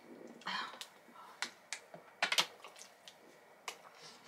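Quiet scattered clicks and rustles from handling a plastic water bottle and peeling a banana, with a short hiss about half a second in.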